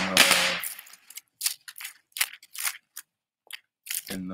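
Firecrackers going off: a hissing burst at the start, then a quick, uneven string of about a dozen sharp pops.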